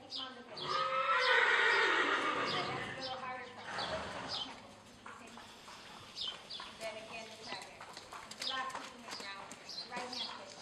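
A horse whinnying, a loud call of nearly three seconds that starts about half a second in and falls in pitch. Hoofbeats come near the end.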